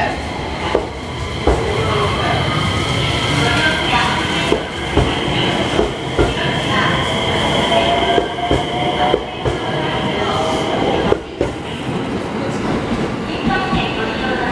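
JR West 227 series electric train pulling out and accelerating away along the platform: a whine that rises in pitch partway through, a steady high tone, and irregular clicks of the wheels passing over rail joints.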